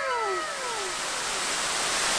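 Steady rush of a waterfall pouring over stone terraces. Over the first second a pitched sound with overtones glides down in pitch and fades.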